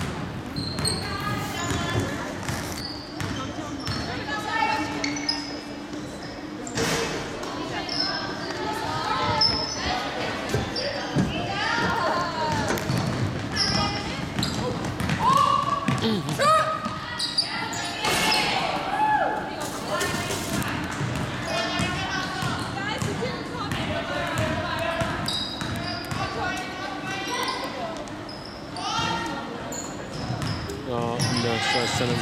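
Basketball dribbling and bouncing on a hardwood gym floor during play, with voices of players and spectators calling and chattering throughout. It all echoes in the large gymnasium.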